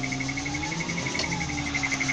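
Rapid, steady electronic beeping from the Tadano 30-ton crane's cab warning buzzer, about eight short high beeps a second, over the steady low hum of the crane's engine. About a second in, a fainter whine rises and falls once.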